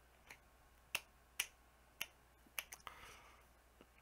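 A string of about seven sharp, short clicks at irregular intervals, with a brief soft rustle about three seconds in.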